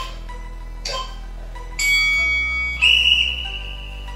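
Background music with a soft beat about once a second. About two seconds in, an interval timer sounds a high steady tone, then a louder, longer one, marking the end of a timed exercise interval.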